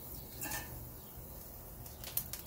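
Tri-tip steak sizzling faintly as it is laid on the hot grate of a Big Green Egg charcoal kamado grill for a high-heat sear. A short clink of the tongs comes about half a second in.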